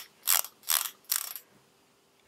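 Plastic twist-up lip balm stick being wound up, its twist mechanism ratcheting in three short turns less than half a second apart.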